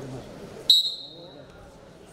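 A referee's whistle gives one short, sharp blast about a second in, a high piercing tone that rings briefly in the hall, signalling the restart of the wrestling bout.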